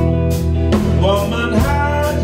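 Live electric blues band playing: electric guitar over bass guitar and drums, with drum and cymbal hits about twice a second.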